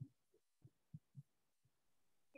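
Near silence: room tone, with a few faint, short, low thuds.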